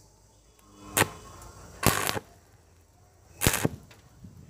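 Stick-welding arc on thin steel square tubing, struck in short bursts: three bursts about a second apart, each lasting well under half a second, with near quiet between. The arc is made and broken over and over, so the weld goes down as a row of overlapping dots, a technique for thin-walled tubing.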